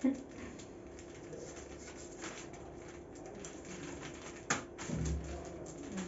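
Kitchen knife cutting raw meat on a plastic bag: soft scraping and plastic crinkling, with a sharp click about four and a half seconds in.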